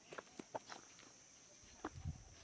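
Faint footsteps of several people walking on a dry dirt yard, a few scattered soft steps. A faint steady high-pitched hiss sits underneath.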